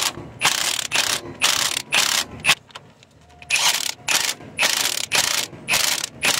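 Socket ratchet on a long extension clicking in repeated short strokes, about two a second with a brief pause partway through, as an engine mount bolt is run down tight.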